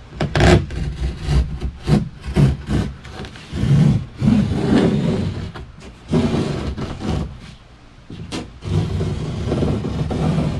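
A knife cutting through dry fiberglass cloth laid on a wooden kayak deck, in a run of short irregular strokes, with the cloth rubbing on the wood as it is lifted and pulled. The strokes pause briefly near the end, then carry on.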